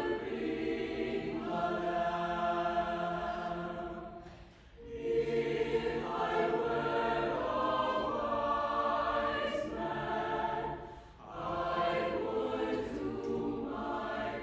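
A mixed high school madrigal choir singing, held notes in long phrases with two short breaks, about four and a half and eleven seconds in.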